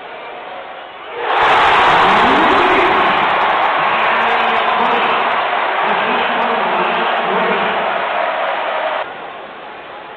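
Basketball arena crowd cheering and clapping after a home-team three-pointer. It erupts suddenly about a second in, stays loud, and cuts off abruptly near the end.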